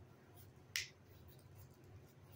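Faint room tone with one short, sharp click about three quarters of a second in.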